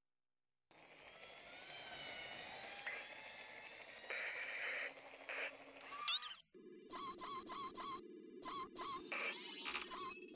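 Faint robot sound effects for the animated WALL-E menu start after a short silence. First comes a hissing, windy ambience with gliding whistles, then from about six and a half seconds a steady low hum under a run of quick mechanical clicks and short chirps.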